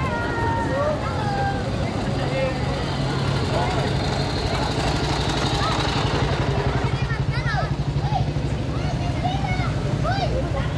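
Engines of WWII-era military vehicles, a canvas-topped six-wheel army truck among them, running at slow parade pace as they pass close by, with a throbbing engine beat that comes through most strongly in the second half. Crowd chatter runs underneath.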